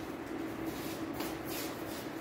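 Induction cooktop's cooling fan running with a steady low hum and a hiss, with light rustling of handling in the second half.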